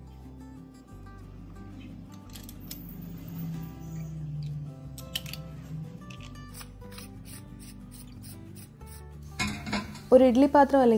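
Stainless steel kitchen press being handled: dough pushed into its metal cylinder, then the threaded top with its crank handle screwed on, giving scattered metal scrapes and clicks that come thickest in the second half. Soft background music plays underneath.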